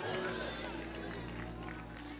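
Soft sustained keyboard chord, several low notes held steadily, over faint room noise.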